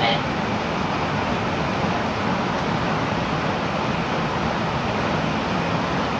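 Steady running noise of an N700A Shinkansen, heard inside the passenger cabin: an even rumble and rush with no distinct events.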